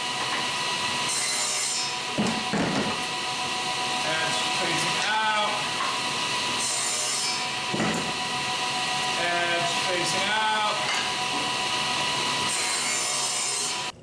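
SawStop table saw running with a steady whine, its blade cutting a shallow groove in a thin wooden side piece that is pushed across it with a push block. The sound surges briefly as the board meets the blade.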